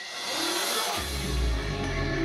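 Live rock band starting a song: a high, hissy wash of sound, then about a second in a deep bass note comes in and holds under sustained electric guitar tones.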